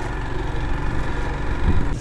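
Motorcycle engine running steadily as the bike is ridden over a loose gravel track.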